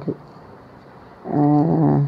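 A woman's voice: a short pause, then one drawn-out vocal sound held at a steady pitch for under a second, not forming recognisable words.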